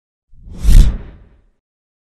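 Logo-reveal whoosh sound effect with a deep low boom, swelling up about a third of a second in, peaking near the middle and fading out within about a second.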